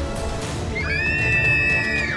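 Young women squealing in delight, a high held cry on two pitches that starts about a second in and slides down at the end, over background music.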